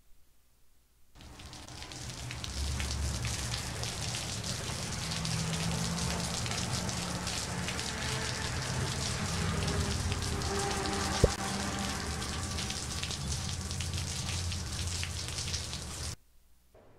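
Steady rain falling on a water surface, fading in after about a second of silence. A single sharp click sounds a little past the middle.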